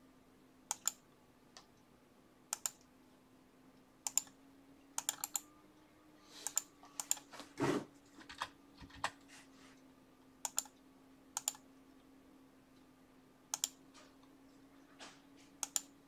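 Computer mouse and keyboard clicks at a desk: scattered sharp clicks, many in quick pairs, as menu items are clicked and a few keys typed. One duller, louder knock comes about seven and a half seconds in, over a faint steady hum.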